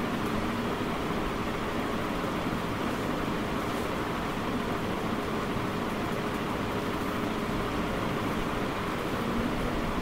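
Steady background noise: a constant even hiss with a faint low hum, unchanging throughout.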